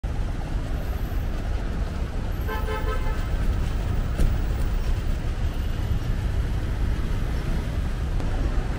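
Steady low traffic rumble at a busy road kerb, with one short car-horn toot about two and a half seconds in and a sharp click a little after the middle.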